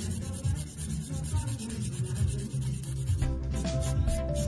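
Foam nail buffer block rubbed back and forth over a fingernail in quick strokes, taking the shine off the nail surface, over background music that grows louder near the end.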